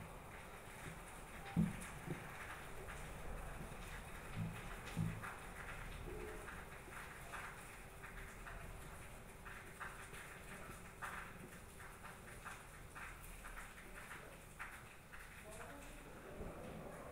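Faint handling sounds of a printed circuit board being worked with a soldering iron: a few soft knocks in the first five seconds and scattered small ticks.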